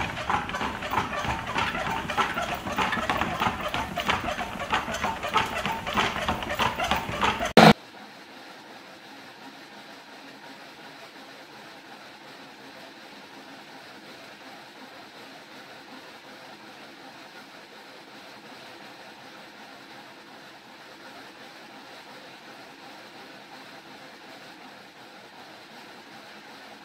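A loud, rapid clatter for the first eight seconds or so, which cuts off suddenly. Then the quieter, steady rolling rumble of a manual slat-mill dog treadmill with a Doberman running on it.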